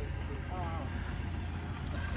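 Diesel engine of a John Deere farm tractor idling: a steady low rumble. A faint voice is heard briefly about half a second in.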